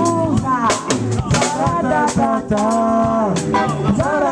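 Live band with a singer: a woman's lead vocal holding long, bending notes over electric guitar, drum kit and keyboard.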